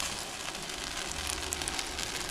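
Thick consommé-dipped tortilla frying in hot avocado oil in a pan: a steady sizzle with small scattered crackles.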